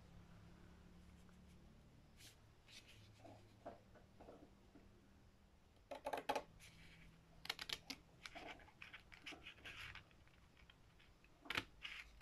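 Scissors cutting through a thin card paint-sample swatch: faint, with a few small ticks at first, then short clusters of clicking snips from about halfway through.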